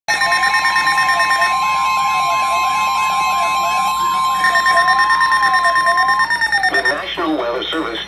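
RadioShack Public Alert weather radio sounding a severe thunderstorm warning alert: a steady NOAA Weather Radio warning tone with a siren-like warble sweeping up and down under it. The tone cuts off about six seconds in, and a broadcast voice starts reading the warning near the end.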